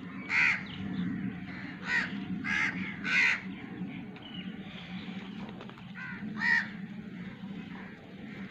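Short, harsh animal calls, five in all: one soon after the start, three in quick succession around two to three seconds, and one more after six seconds. A steady low hum runs underneath.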